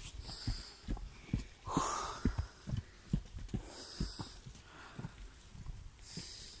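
A hiker breathing hard while climbing a steep, rooty trail, several loud exhalations with the strongest about two seconds in, over irregular footsteps and thuds of boots on earth and rock.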